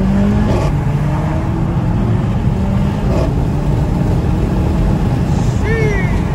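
Mercedes-AMG CLA45's turbocharged four-cylinder engine heard from inside the cabin, pulling under acceleration with its pitch climbing steadily. About three seconds in the pitch falls back, then climbs again.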